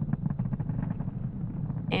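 Falcon 9 rocket's first-stage engines during ascent, heard as a steady low, crackling rumble, thin and muffled as if carried over the broadcast feed.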